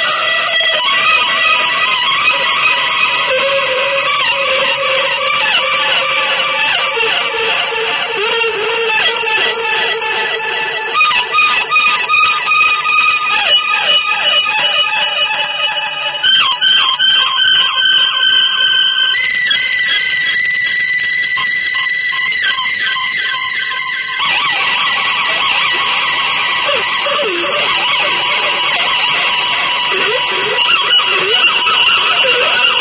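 Avant-garde electric guitar music with effects: dense, layered sustained tones. Partway through, the sound turns choppy and pulsing for several seconds, then the texture shifts suddenly twice.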